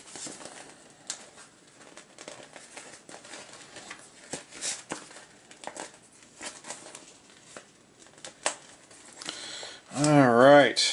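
Stiff plastic display panel and small plastic snap connectors being handled: scattered crinkles and light plastic clicks, with a few sharper clicks.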